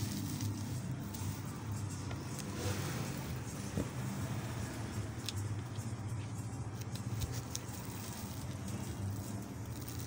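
Steady low background hum, with faint rustling and a few light clicks as a stiff paper mat is pressed and smoothed by hand over a hat mould.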